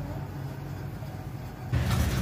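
A low steady rumble of background noise, with a louder rush of noise coming in near the end.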